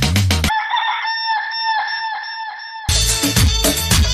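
The dance track breaks off for about two seconds while a chicken sound effect plays: one steady-pitched call pulsing quickly, about four times a second. Then the full dance beat comes back in.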